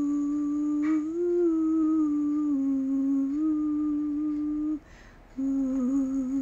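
A woman humming a slow tune with closed lips in long held notes, breaking off briefly for a breath near the end.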